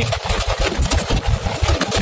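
Vehicle engine running as it drives along a wet road in the rain, heard from inside the cab, with a steady hiss over its low, uneven throb.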